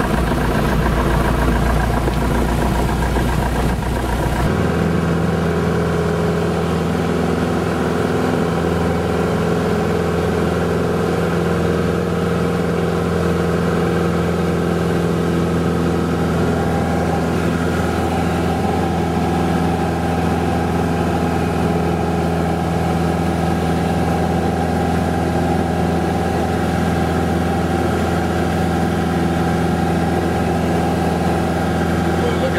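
Light aircraft's piston engine running steadily at power, heard inside the cabin during the takeoff and climb-out. The tone of the drone changes abruptly about four and a half seconds in.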